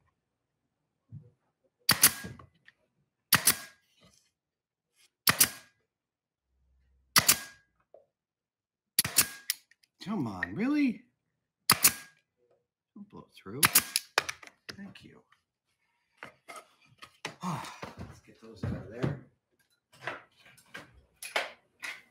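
Senco 23-gauge pneumatic pin nailer firing pins into plywood box panels: about seven sharp shots, one every couple of seconds, over the first fourteen seconds. Then quieter knocks and handling clatter as the pieces are moved on the bench.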